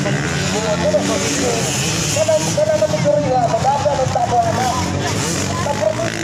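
Motocross bike engines revving on the track, pitch rising and falling quickly with each throttle and gear change, over voices of nearby people.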